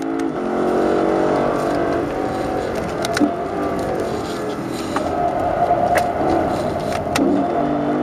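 Lexus LC500's 5.0-litre V8 heard from inside the cabin, its note falling as the car brakes and shifts down from fourth to third. A few sharp clicks are heard around the middle and near the end.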